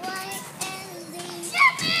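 A young child singing a few held notes, then a loud, high-pitched shout of "Yeah!" near the end.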